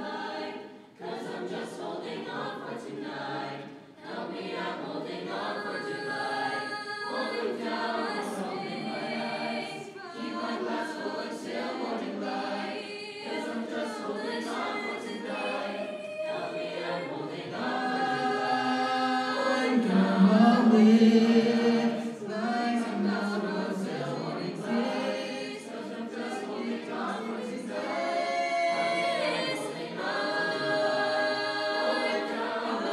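Mixed-voice choir singing, swelling to its loudest a little past the middle and then easing back.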